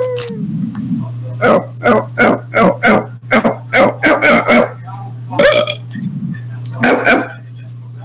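A run of short, sharp dog-like barks or yaps, about three a second at first, then in looser groups, over a steady low hum.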